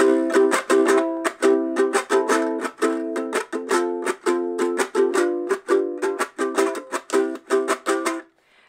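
Ukulele strummed quickly and steadily through a C, A minor, F, G chord progression, with a strip of card woven over and under the strings near the saddle adding a snare-drum-like rattle to each strum. The strumming stops near the end.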